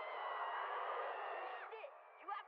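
A cartoon character screaming on a faint, thin-sounding episode soundtrack: one held high-pitched cry over a noisy background that falls off and ends about one and a half seconds in.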